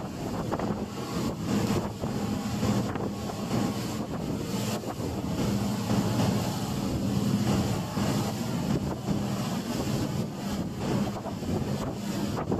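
Motorboat under way: the engine drones steadily under heavy wind buffeting on the microphone and the rush of water along the hull.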